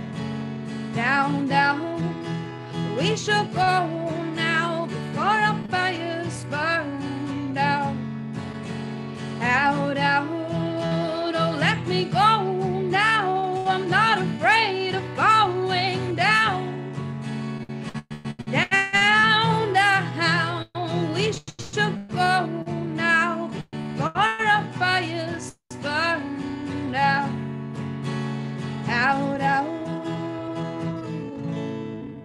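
A woman singing to her own strummed acoustic guitar, heard live through a Zoom call, with brief audio drop-outs about 18 and 26 seconds in.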